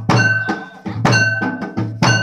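Procession drumming with struck metal: a heavy drum stroke about once a second, each carrying a deep boom and a long metallic ring, with lighter strokes in between.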